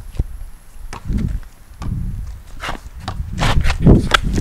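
Basketball being dribbled on a concrete driveway: a string of irregular bouncing thuds, with sneakers scuffing on the concrete, getting louder near the end.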